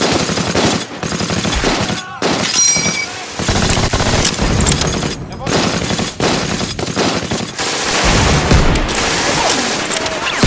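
Battle gunfire: rapid machine-gun bursts mixed with rifle shots, nearly continuous, with short lulls about two and five seconds in.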